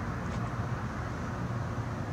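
Steady low hum over a faint even hiss, with nothing sudden.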